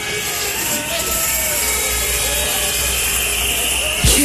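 Live outdoor concert sound from a muddy audience recording: a steady low rumble under hiss, with faint voices.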